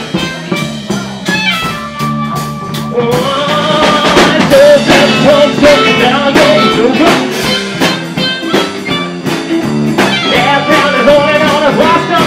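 Live blues-rock band playing: drum kit keeping a steady beat under bass and electric guitar. A wavering lead vocal comes in about three seconds in.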